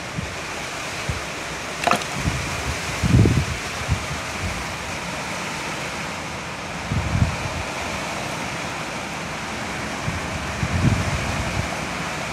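Water pouring and splashing steadily onto a phone in a plastic container, with a few dull handling bumps and a click.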